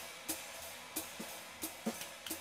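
Quiet background music: a light drum-kit beat with sharp hi-hat ticks and soft low thumps, a few hits a second.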